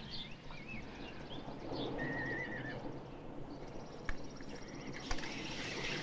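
Outdoor ranch ambience with a horse whinnying, a warbling call about two seconds in, and a couple of sharp clicks near the end.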